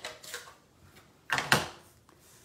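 Plastic clacks and knocks as a clear acrylic stamp block and a Stampin' Up ink pad are handled and the block is tapped onto the pad to ink it. A few light clicks, then the loudest knock about a second and a half in.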